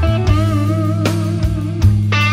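Blues-rock instrumental passage: electric guitar playing sustained lead notes with vibrato over a steady low bass line.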